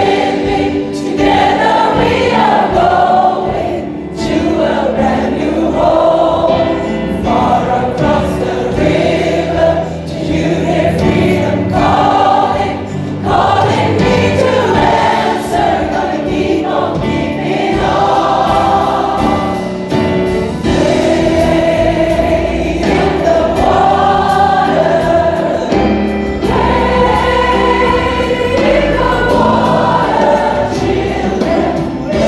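A large mass gospel choir singing a song with band accompaniment, many voices sustaining chords together over steady low bass notes.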